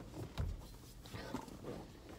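Faint shuffling and handling noises of someone settling in a car seat, with a soft low thump about half a second in.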